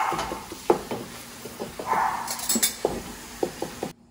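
Wooden spoon knocking and scraping in a stainless steel frying pan, breaking browned ground beef and sausage into small chunks: a run of irregular short clacks.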